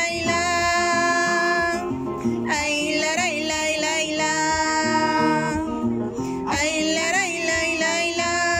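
A woman singing long held notes, three in a row with short breaks between, over acoustic guitar accompaniment in a live performance.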